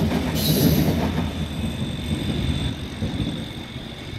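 Train rumble fading away as a Berlin S-Bahn train runs off past the station, with a brief hiss about half a second in and a steady high-pitched squeal throughout.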